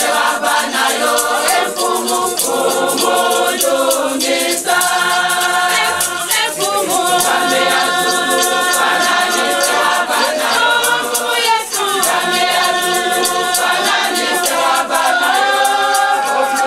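A large choir of women's voices singing a gospel hymn together in harmony, kept to a steady beat by hand claps and a hand shaker.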